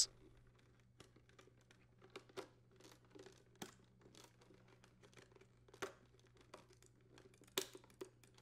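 Faint, scattered plastic clicks and rubbing as a refrigerator dispenser actuator paddle is fitted into its plastic dispenser housing, its arms seating on the tabs; the sharpest click comes near the end.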